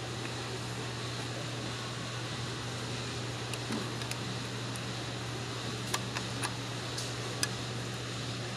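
Steady low mechanical hum of background machinery, with a few light clicks in the second half.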